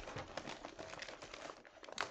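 A Priority Mail paper envelope rustling and crinkling as it is picked up and handled, a dense run of small crackles.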